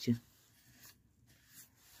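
Near silence after a word ends, with a few faint, brief rustling sounds.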